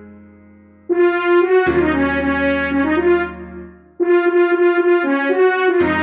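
French horn playing a melody of short repeated and stepping notes, in two phrases with a brief gap between them, over a backing track with sustained low bass notes.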